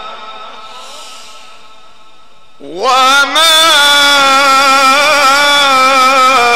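Male Quran reciter chanting in the melodic mujawwad style into a microphone: a held note fades away, then about two and a half seconds in his voice swoops upward into a new long, ornamented note held loudly through the rest.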